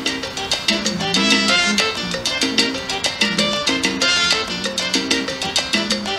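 Upbeat Latin dance music with a driving percussion beat, playing on the car stereo.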